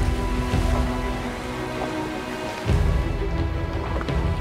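Background music with long held notes, over a rough rush of wind and water noise.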